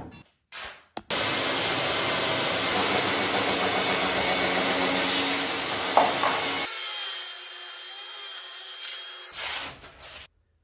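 Makita plunge-cut track saw running along its guide rail and cutting through a wooden slab, with a dust-extractor hose on it. A few short knocks come first as the rail is set. About two-thirds of the way through, the sound turns thinner with a faint steady high tone, and there is one last short burst near the end.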